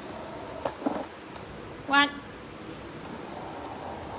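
Steady low background noise with a single spoken word, "one", about halfway through, and a couple of faint short knocks shortly before the first second.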